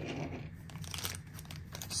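Clear plastic bag crinkling softly as a die-cast toy car inside it is picked up and handled.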